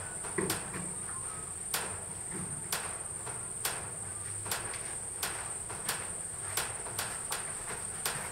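Steady, high-pitched drone of insects, with short sharp clicks roughly once a second over it.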